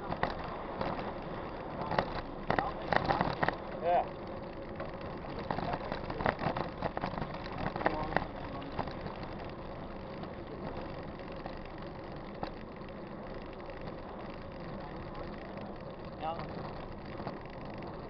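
Mountain bike rolling along a paved road: steady wind and tyre noise, with a run of rattling knocks in the first half as it jolts over the surface.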